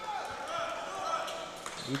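Low murmur of spectators' and players' voices in a gymnasium, with a few faint knocks.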